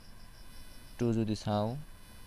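Faint, high, evenly pulsed chirping in the background, about six chirps a second, like a cricket, with a brief spoken word in the second half.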